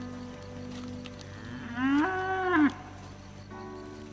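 A cow moos once, about two seconds in: a single call of about a second that rises in pitch and drops away at the end.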